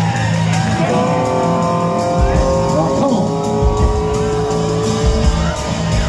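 Live rock band playing: held electric notes that slowly slide downward over a steady cymbal beat, with bass and kick drum coming in about two seconds in.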